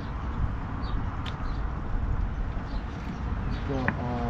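Steady low outdoor rumble, with a faint click about a second in and a short voice-like sound near the end.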